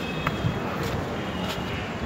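Steady outdoor background noise, like distant city traffic, with a few faint clicks from footsteps of people walking along the elevated metro track walkway.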